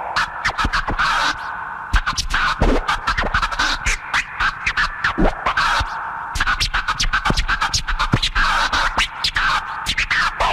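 Turntable scratching over a hip hop beat: a record is scratched in quick, chopped strokes, with several pitch sweeps up and down, over a heavy bass.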